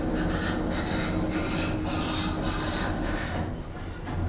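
Thyssen elevator's stainless-steel sliding doors closing, with a scraping rub over a steady hum. The sound stops a little before the end as the doors come shut.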